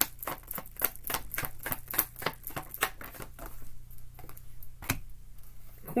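A tarot deck being shuffled by hand: a run of quick card clicks, about four or five a second, that thins out after about three seconds, with one sharper snap of a card near the end.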